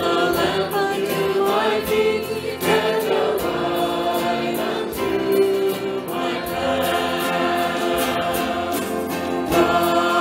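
Church worship music: several voices singing a slow song together over a band. An electronic drum kit adds a steady beat and cymbal hits.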